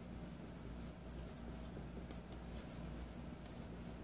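Sharpie felt-tip marker drawing and writing on paper: faint, short scratchy strokes coming in irregular runs, over a steady low room hum.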